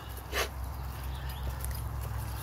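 A short breathy snort from an animal about half a second in, over a steady low rumble.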